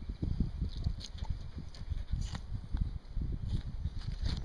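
A knife cutting a wild turkey's breast meat free from the bone and the carcass being handled: soft irregular rustling of feathers and skin with many low, dull thumps and a few faint crackles.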